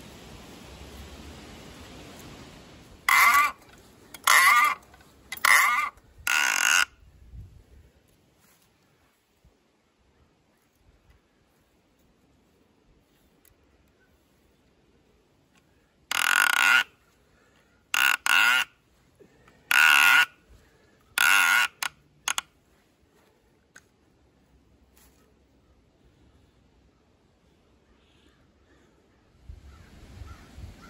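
A crow cawing in two runs: four harsh caws about three seconds in and five more about sixteen seconds in, with near quiet between the runs.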